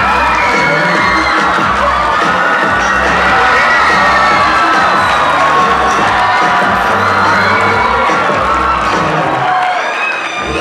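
A school audience cheering and shouting loudly and without a break over music with a steady bass.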